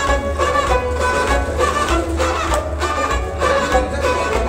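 Kashmiri Sufi music played on a harmonium, held melodic notes over a steady hand-drum beat.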